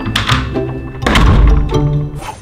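A door shut hard about a second in, a heavy low thud, over background music.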